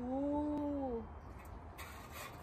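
A single drawn-out vocal call, held for about a second, that rises slightly and then falls away.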